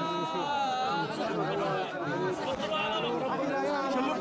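A crowd of men talking and calling out over one another.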